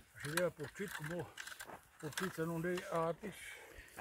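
A person talking quietly.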